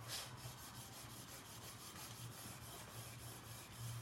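Plastic cake smoothers rubbing over a sugarpaste-covered cake, a faint run of short scraping strokes as the covering is buffed smooth, over a steady low hum.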